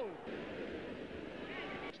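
Football stadium crowd noise, a steady broad din on an old 1960s broadcast soundtrack, with the commentator's voice breaking in briefly near the end.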